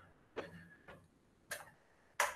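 Three short, faint clicks about half a second apart in a quiet room.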